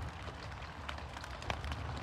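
Steady low background hum with a faint click or two.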